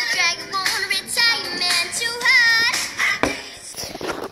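A boy singing, his voice sliding up and down in pitch.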